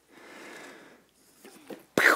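A man breathing out heavily during a set of handstand jumps, then a few faint knocks and a sharp thud near the end as he pushes off the wooden floor into a handstand.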